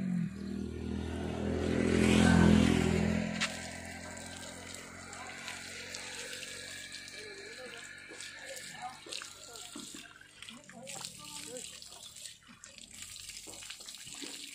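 Water running from a tanker's tap and splashing onto the ground as hands are washed under it, a steady, quiet hiss with small splashes. A louder pitched sound with several steady tones covers the first three seconds or so, then stops.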